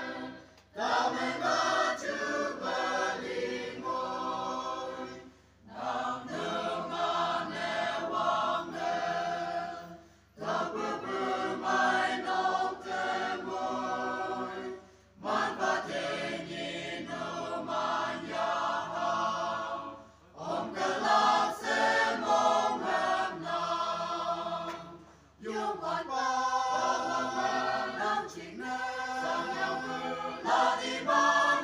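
Choir singing, in phrases of about five seconds, each followed by a short breath-like pause.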